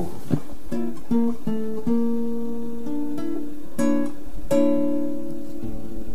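Acoustic guitar played slowly: single notes plucked one after another, then chords struck and left to ring.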